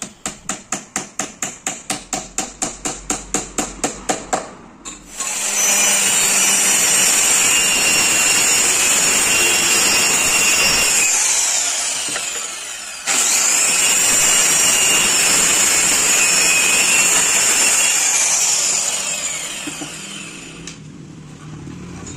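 A steel hammer driving a nail into plywood with a fast run of about five blows a second. Then an electric angle grinder runs at full speed twice, each time switched off and spinning down with a falling whine.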